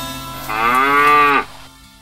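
A water buffalo lowing once: a single call of about a second that rises and then falls in pitch, the loudest sound here. Music with plucked-string notes sits underneath and fades out near the end.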